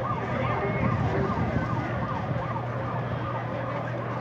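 A siren sweeping down and up in pitch over and over, about two sweeps a second, over a steady low hum of street noise.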